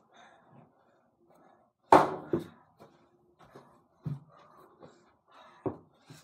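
Small ball hitting an over-the-door mini basketball hoop and its backboard, with a sharp, loud knock about two seconds in and a second knock right after. Softer thuds follow about four and five and a half seconds in as the ball comes down and the boy moves for the next shot.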